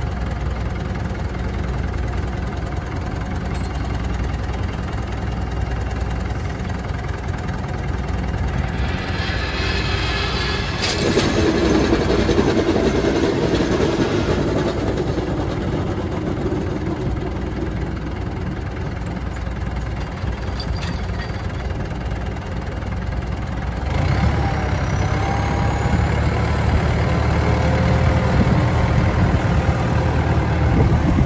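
Massey Ferguson 491 tractor's diesel engine running steadily. It grows louder for a few seconds midway, then comes in deeper and louder for the last several seconds as the tractor drives off, with a thin rising whine over it.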